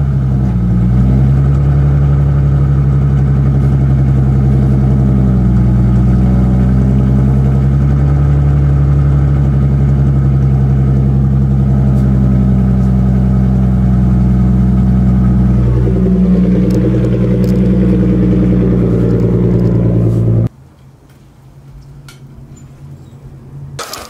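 Nissan 350Z's 3.5-litre V6 running steadily through a Tomei aftermarket exhaust, without revving, then shut off abruptly about twenty seconds in.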